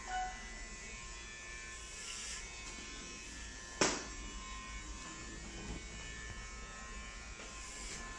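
Steady electric hum or buzz in a small room, with one sharp knock about four seconds in.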